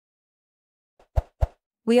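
Silence for about a second, then two short pops about a quarter second apart: sound effects on the video's subscribe-button animation. A voice starts right at the end.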